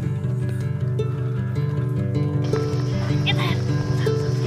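Instrumental music with sustained held notes, between sung lines of a song. About three seconds in, a young goat gives a brief wavering bleat over the music.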